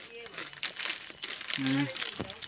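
Potato chips being eaten: crisp crunching and crackling while chewing, with a brief voiced hum near the end.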